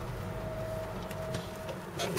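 Low, steady hum of a car's engine and road noise heard inside the cabin, with a faint thin whine that comes in just after the start and stops shortly before the end.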